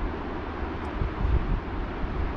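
Wind buffeting the microphone: a steady, uneven low rumble with a thin hiss above it.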